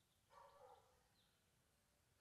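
Near silence: room tone, with one faint, brief pitched sound about half a second in.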